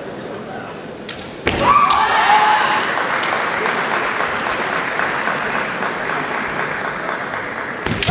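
Kendo bout: a sharp impact about one and a half seconds in, followed at once by a shouted kiai, then a steady din of shouting voices in a large hall; another sharp impact and shout come right at the end.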